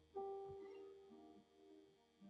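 Soft piano chord played on an electronic stage keyboard, starting just after the start and fading slowly, then a quieter note about a second and a half in: the opening of a worship song.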